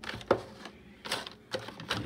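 Plastic food-dehydrator trays and parts being fitted together: a handful of separate sharp clicks and knocks of plastic on plastic.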